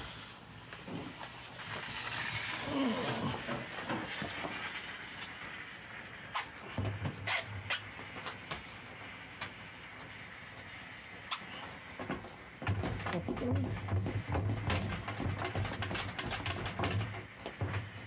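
H2O Mop X5 steam mop hissing as it puffs steam onto a floor tile to soften the old glue beneath, the hiss fading after about three seconds. After that come scattered light clicks and taps, with a low hum that comes and goes.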